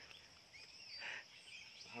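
Faint open-air farm ambience: a steady high insect drone with a few short bird chirps.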